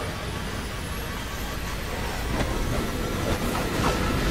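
Steady, dense rushing roar with a heavy low rumble: the sound-designed wind and rumble of an airliner cabin torn open in flight. A few faint sharper sounds come in over the second half.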